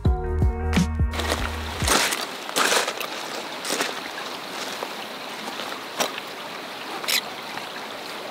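Background music ending about a second in, then crampon footsteps crunching on glacier ice at an irregular pace over a steady rushing background noise.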